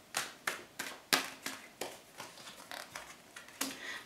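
Tarot cards being drawn from a deck and laid down on a wooden table: a quick series of light snaps and taps, the sharpest a little over a second in.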